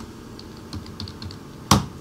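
Computer keyboard typing: a run of light, separate keystrokes, then one much louder key press near the end, the Enter key sending the typed command.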